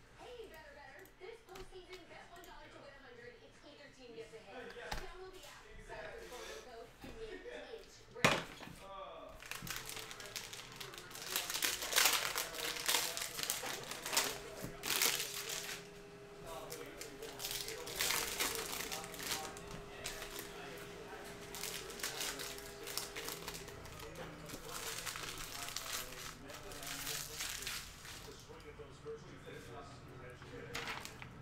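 Crinkling of a plastic cello-pack wrapper of trading cards as it is handled and torn open, in irregular rustles, after one sharp click about eight seconds in. A faint steady hum runs through the middle stretch.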